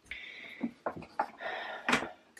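Soft rustling and a few light taps from a foam board strip being handled and brushed against paper.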